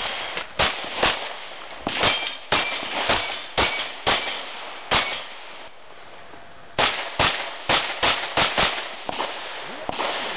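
Rapid pistol shots fired in quick strings during a practical shooting stage, with a pause of nearly two seconds in the middle. Several hits ring on steel plate targets.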